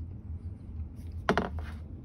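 Handling noise: one short knock a little over a second in as a steel tube is moved on a cutting mat, over a steady low hum.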